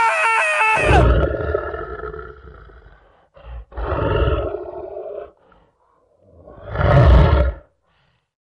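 A short run of stepped musical notes, then a lion-roar sound effect about a second in, followed by two more roars, the last near the end.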